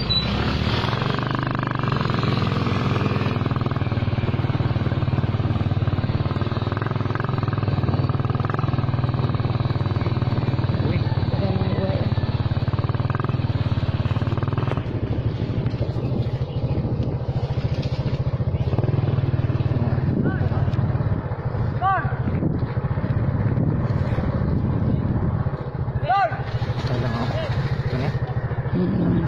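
Small motorcycle engine running steadily under way, a continuous low drone with road and wind noise over it.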